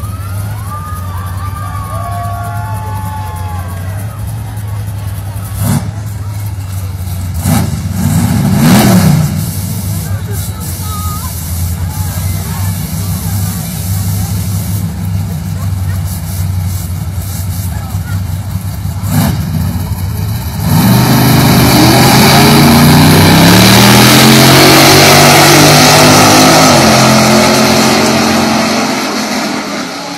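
Big-rim Chevrolet Impala drag car idling at the start line with a steady low engine hum and a brief rev about eight seconds in. About twenty-one seconds in it launches at full throttle, and the engine note climbs through several rising gear pulls for about seven seconds before fading as the car runs away down the strip.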